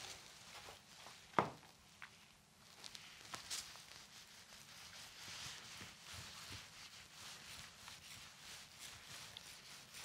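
Soft, faint rubbing of a ribbed paddle roller rolled back and forth over resin-wet fibreglass mat, consolidating the laminate. A single sharp knock comes about a second and a half in.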